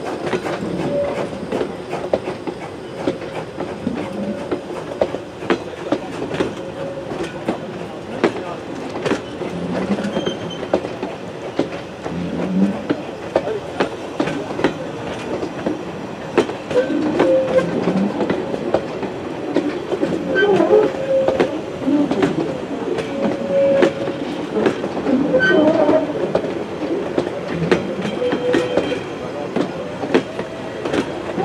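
Metre-gauge passenger coaches rolling slowly past, their wheels clicking over the rail joints, with short wheel squeals that come more often and louder in the second half.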